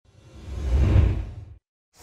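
Deep whoosh sound effect of a channel logo animation, swelling to a peak about a second in and cutting off abruptly, with a loud hit starting right at the end.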